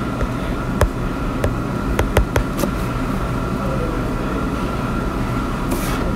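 Steady low hum and hiss of the recording, with a scattered series of light taps from a stylus on a tablet screen as an expression is handwritten, most of them in the first three seconds.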